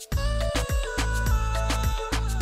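Background music with a steady beat and held melodic notes. The music drops out for a moment at the very start.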